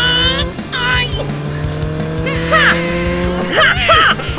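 Cartoon vehicle engine sound effects revving, rising slowly in pitch, with several short tire screeches, over background music.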